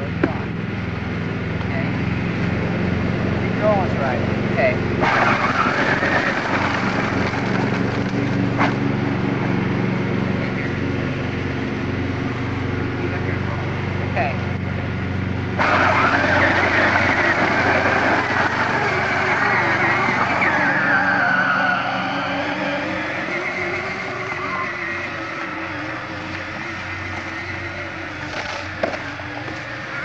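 Small engine of a children's youth four-wheeler (ATV) idling steadily, then getting louder about halfway through as it pulls away, its pitch rising and wavering with the throttle.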